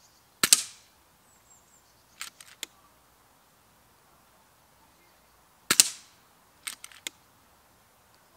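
Two shots from an FX Dynamic Compact .177 PCP air rifle about five seconds apart, each a sharp crack. Each is followed a second and a half or so later by a quick run of three or four clicks as the action is recocked.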